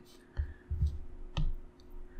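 A few soft taps and one sharper click about a second and a half in: fingertips tapping an iPad touchscreen as an edit is undone and a menu is opened.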